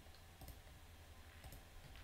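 Near silence with two faint computer mouse clicks, about a second apart.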